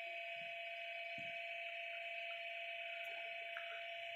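Faint steady hum of room tone, with a couple of soft low thuds from a wooden rolling pin working dough on a wooden board, the clearer one about a second in.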